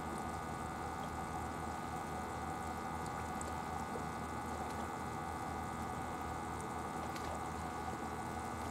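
A steady low mechanical hum with several steady tones, unchanging throughout, with a faint wash of water under it.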